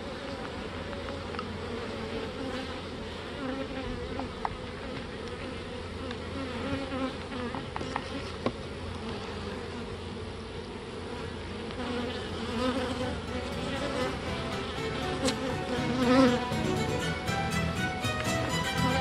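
Honeybees buzzing as they fly around an open comb frame, a steady hum. Violin music comes in over the last few seconds.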